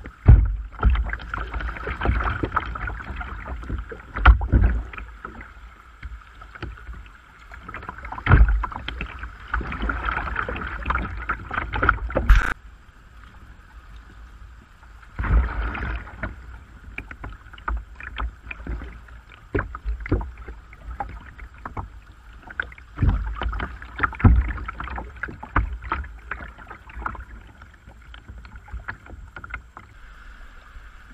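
Kayak moving through river riffles, heard from the deck: water splashing and slapping against the hull with irregular splashes and knocks, coming in bursts with quieter stretches between.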